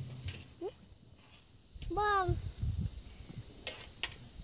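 A person's voice: a short rising call about half a second in, then a longer, high-pitched call about two seconds in, over a few low thuds.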